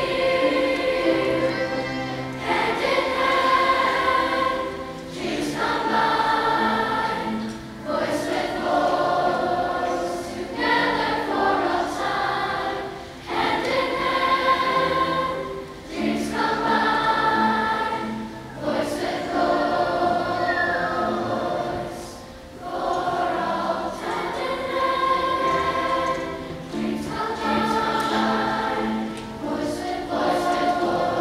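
A large school choir singing in sung phrases, broken by short pauses every two to three seconds.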